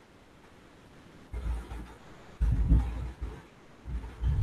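Computer keyboard keystrokes picked up by the microphone as low, muffled thumps, in two quick clusters about a second and a half in and again around two and a half to three seconds in.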